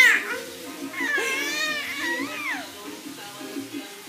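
A four-month-old baby's high-pitched squeals: one trailing off right at the start, then a longer cooing squeal about a second in that rises and falls in pitch. Steady background music plays underneath.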